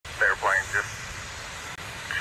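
Sheriff's radio call heard over a police scanner: a man's voice says a few words in the first second, then steady radio hiss until the next phrase.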